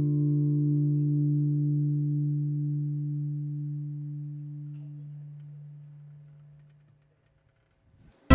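The song's last chord, struck on acoustic guitar, rings on and fades slowly away, dying out about seven seconds in.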